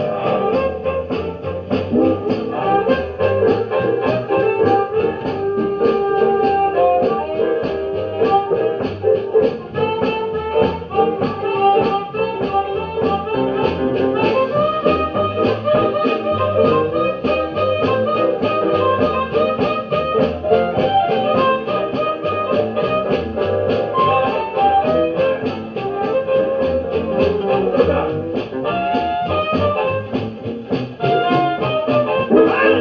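Blues band playing with a steady beat.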